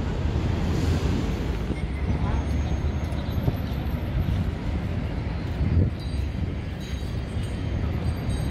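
Wind buffeting the microphone over the steady outdoor hum of a city square: distant traffic and faint voices of passers-by.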